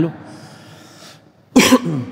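A man coughs once, a short sharp burst about one and a half seconds in, close to a handheld microphone.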